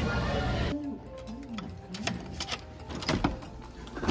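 Busy restaurant chatter that cuts off abruptly under a second in, followed by a quieter room with a few scattered sharp clicks and knocks.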